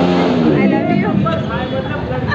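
Voices of several people talking at once, no clear words, over a steady background hum.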